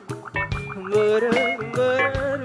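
A live band playing a pop song, with pitched parts wobbling in pitch over a quick run of short percussive strikes, in a gap between sung lines.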